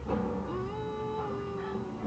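A boy singing one long held note over a strummed acoustic guitar; the note slides up about half a second in and then holds steady.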